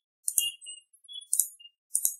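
Three short, thin high-pitched clicks, mouse clicks on the installer's Next button, with a faint tinkly ring after them.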